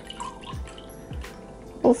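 Liquid ceramic glaze poured from a plastic jug into a small ceramic pot, a faint trickle and splash, under background music with a soft beat.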